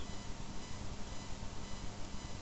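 Room tone from the recording microphone: a steady low hiss with faint, constant hum lines and no distinct sound.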